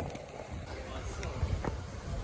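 Outdoor street background with a low rumble of wind on the microphone and a few faint clicks.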